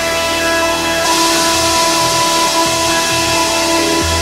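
Live synthesizer music: a sustained chord of many held notes over shifting low bass notes, with a bright hiss swelling in about a second in.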